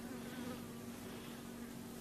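Faint room tone with a steady low electrical-sounding hum.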